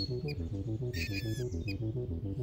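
Dramatic background music built on a quick, even low pulse of about six or seven beats a second.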